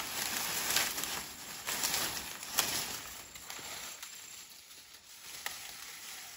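Dry corn stalks and their papery leaves rustling and crackling as they are gathered up by hand and stacked, with a few sharper snaps among the rustle.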